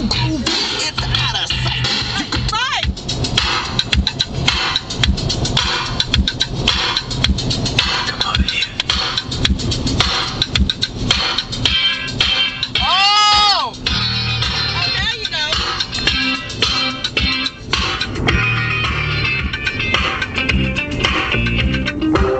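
A song playing on a car stereo, with a steady beat and voices over it.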